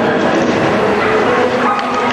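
Dogs barking over the steady din of crowd chatter in a busy exhibition hall.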